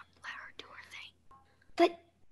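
Whispered speech close to a microphone, breathy and soft, followed by one normally voiced word near the end.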